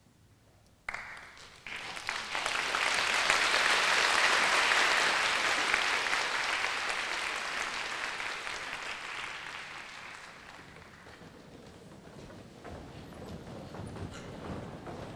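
Audience applause in a concert hall: it breaks out suddenly about a second in, swells, then slowly dies away. Near the end, footsteps and shuffling as the choir files off the stage risers.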